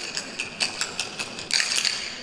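Khartal, the Rajasthani wooden hand clappers, played solo. A run of quick separate clacks leads into a fast rattling roll about one and a half seconds in.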